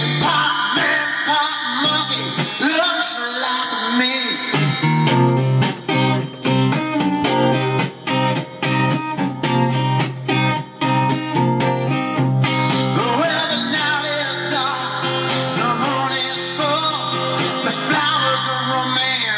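Acoustic-electric guitar strummed in a steady rhythm of chords through the middle of the passage, as an instrumental break. A man's singing voice is heard over the guitar for the first few seconds and again near the end.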